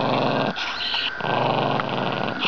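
Dachshund growling low and steadily, in two long growls with a short break between them about half a second in. A grumpy, warning growl from a dog the owner calls mean and nasty.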